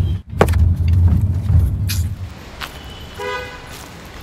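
Low rumble of a car driving, heard inside the cabin, which drops away about two seconds in. About three seconds in comes a short, steady horn toot.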